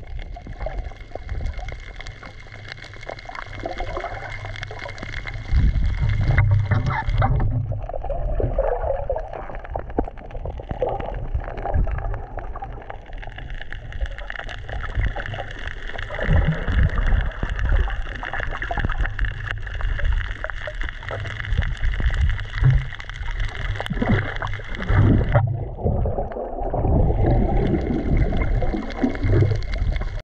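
Muffled underwater water noise: a low rumble with a hiss over it, with no clear tune or beat. The sound changes abruptly about six and a half seconds in and again about twenty-five seconds in.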